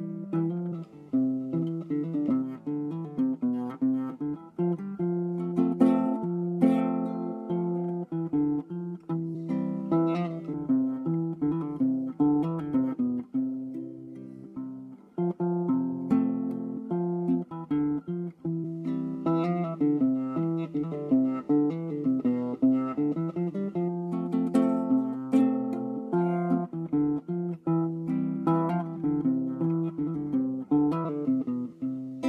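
Cutaway classical guitar played solo fingerstyle as a chord-melody arrangement: a picked melody mixed with chords, in a continuous flow of plucked notes with a softer passage about halfway through.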